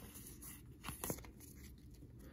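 Faint handling of a stack of Pokémon trading cards, the cards sliding and flicking against one another, with a couple of soft ticks about a second in.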